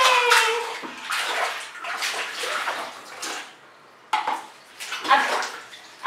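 Hands splashing and slapping the water in a small plastic baby bath tub, in irregular splashes with a brief lull shortly before the end.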